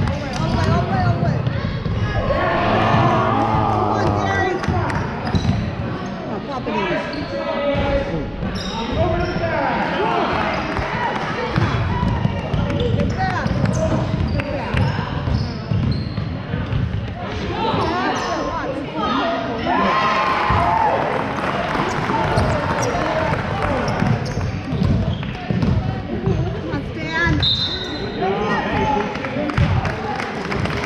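A basketball bouncing repeatedly on a hardwood gym floor during play, under steady overlapping talk and calls from players and spectators. A short high-pitched tone comes near the end.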